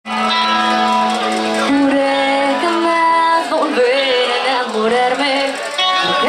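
Live band music: a woman sings lead into a microphone over electric guitar and bass. Long held notes open the passage, and a wavering sung melody comes in from about halfway.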